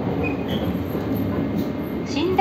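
Steady running noise inside a moving car of the Sunrise Izumo sleeper train (285 series): an even rumble of wheels on rail, with two faint short high squeaks in the first half second.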